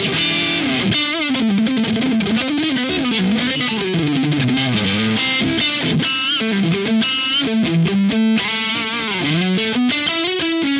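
Ibanez SA360NQM electric guitar played through a Laney Ironheart amp with light crunch distortion: a single-note lead line with string bends, vibrato and a quick run of short notes.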